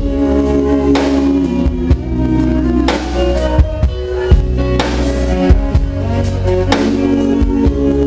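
A live band playing: a drum kit with bass drum and snare keeps the beat under electric guitar, while a man sings into the microphone.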